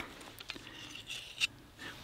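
Faint handling sounds: soft rubbing of a fleece jacket and a few light clicks as a small screw from a folding saw is tucked away into a pocket.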